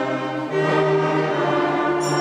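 A sixth-grade concert band of wind instruments playing sustained, held notes together, moving to a new chord about half a second in.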